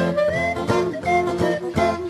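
A hillbilly-jazz band playing, with a clarinet carrying the melody and sliding between notes over strummed acoustic guitar and plucked string bass.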